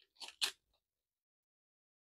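A sheer fabric drawstring pouch crinkling as fingers handle it and work it open: two short rustles in the first half-second.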